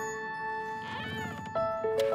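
Soft music of long held notes, with a single short cat meow about a second in; new repeated notes come in near the end.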